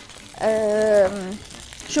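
A woman's voice holding one drawn-out vowel for about a second, a hesitation sound between sentences. Faint sizzling of food frying in a pan underneath.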